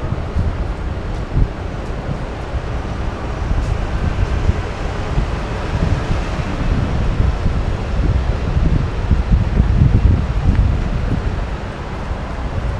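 Wind buffeting the microphone in irregular low gusts, over the steady sound of street traffic, a bus and cars driving past below.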